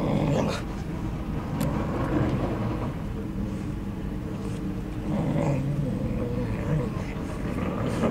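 Two English Cocker Spaniels play-fighting, making low growls on and off over a steady low background rumble.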